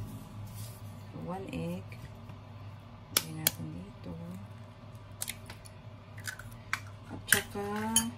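An egg cracked against the rim of a bowl: two sharp taps about three seconds in, then a few lighter clicks as the shell is broken open.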